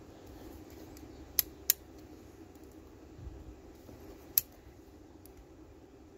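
Small sharp metallic clicks of multimeter test probe tips touching the terminals and brass body of a boat engine's alarm temperature sensor during a continuity check: two clicks close together about a second and a half in, and one more a little past four seconds.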